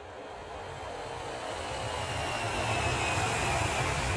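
Jet aircraft engine noise fading in and growing steadily louder: a steady rumble and hiss with a faint whine that slowly falls in pitch.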